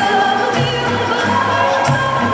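Portuguese folk song for a folk dance: several voices singing together over a bass line that steps between notes, with light percussion.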